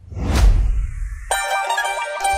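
The intro of a Punjabi pop song starts: a deep bass hit with a swoosh, then, about a second and a half in, a quick melody of short, ringing high notes comes in.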